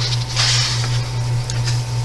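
A paper page of a large colouring book being turned, a brief papery swish about half a second in, over a steady low hum.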